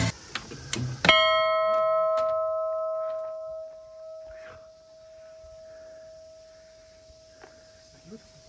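Bronze hanging bell struck once by its clapper about a second in, loud, then ringing on with a long, slowly fading hum.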